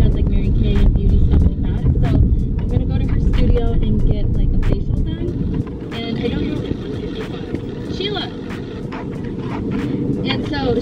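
A woman talking inside a moving car, over the steady low rumble of road and engine noise in the cabin. The rumble drops off markedly about halfway through.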